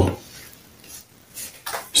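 A few faint light clicks and a small knock about one and a half seconds in, from small hard objects being handled.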